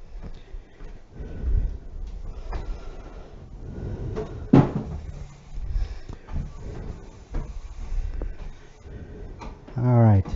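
Footsteps on a hardwood floor and the knocks and thumps of a wooden chair being carried and set down on it.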